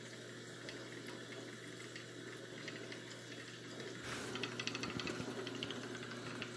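Quiet room with a steady low hum. About four seconds in comes a short hiss, then light clicks of small objects being handled.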